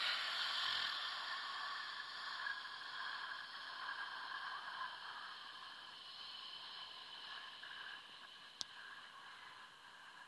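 A long, slow exhale of a held breath close to the microphone, starting abruptly and fading away gradually.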